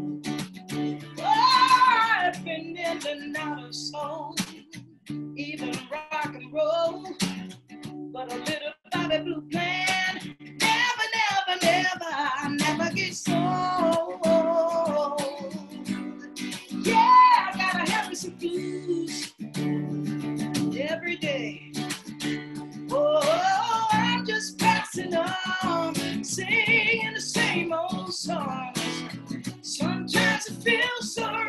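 A woman singing a blues song in phrases over a strummed acoustic guitar.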